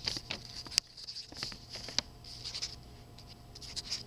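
Pen writing on paper close to the microphone: irregular bursts of scratchy strokes, with two sharp clicks about one and two seconds in.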